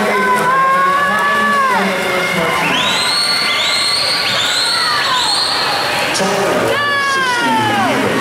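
Spectators cheering a swimming race, with long high-pitched yells that drop in pitch as they end, and a run of four shrill calls about a second apart in the middle, over steady crowd noise.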